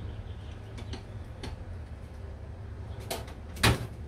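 Steady low hum with a few faint clicks, then a single loud knock near the end.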